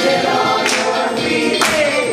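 A show choir singing in parts, with two sharp percussive hits about a second apart.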